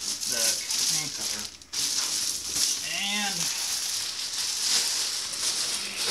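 Clear plastic bag crinkling and rustling as a PC case is pulled out of it, with brief voice sounds near the start and about three seconds in.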